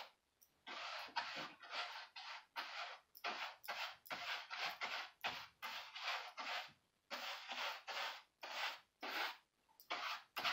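A paintbrush dragged in quick strokes across a canvas, its bristles scraping through acrylic paint, about two strokes a second, with a short pause near the start and another around seven seconds in.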